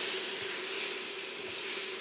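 Diced tomatoes and barley sizzling in a hot pot as they are stirred with a silicone spatula: a steady hiss.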